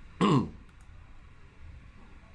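A man clearing his throat once, briefly, about a quarter second in, with a falling pitch; otherwise faint room tone.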